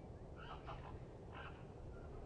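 Faint short bird calls in two brief groups about a second apart, over a low steady background rumble.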